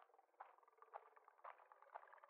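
Near silence, with a few faint scattered clicks.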